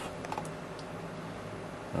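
A few faint clicks from computer input (keys or mouse) about half a second in, over a steady low background hum.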